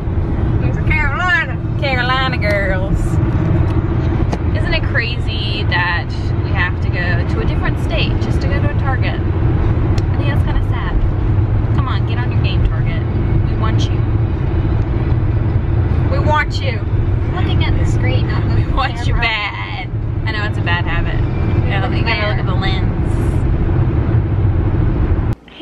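Steady low rumble of road and engine noise inside a car's cabin while driving on a highway.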